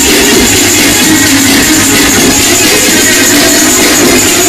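Loud electronic dance music from a DJ mix playing over a club sound system, a dense and continuous wash of sound.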